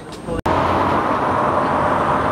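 Busy roadside street noise: a steady wash of crowd babble and traffic. It cuts in suddenly about half a second in, after a quieter moment.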